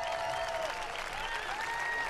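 A large audience applauding, with a few sustained musical notes held underneath.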